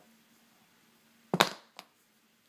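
A stylus put down with a sharp double clack about a second and a half in, followed shortly by a lighter tap.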